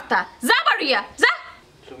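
Only speech: a woman's voice speaking angrily in short, high-pitched bursts, falling quiet about a second and a half in.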